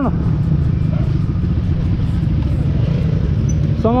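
Dirt bike engine running steadily at low revs, a loud, even rumble of rapid firing pulses as the bike rolls slowly.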